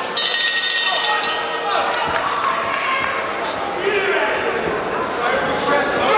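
Ringside boxing bell rung to start the first round, a bright metallic ringing lasting about a second, over crowd voices and shouts in a large, echoing hall.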